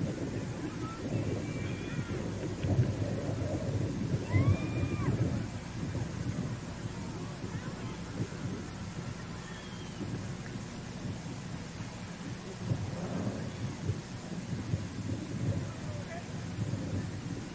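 Low, fluctuating rumble of wind buffeting an outdoor microphone, with a few faint short whistles in the first few seconds.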